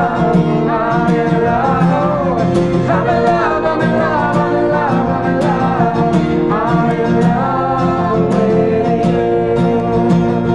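Acoustic guitar strummed in a steady rhythm with several voices singing together, live and unamplified.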